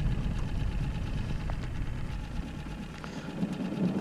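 Small outboard motor running steadily, pushing an aluminum fishing boat across the lake; its sound drops off somewhat in the last second or so.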